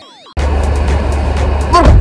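The tail of a synth intro jingle with falling sweeps, then an abrupt cut to a steady low rumble inside a car's cabin. A man's voice starts near the end.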